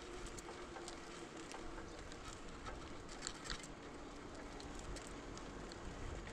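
Riding noise from a bicycle picked up by a bike-mounted camera: low steady tyre and road noise with scattered light clicks and rattles.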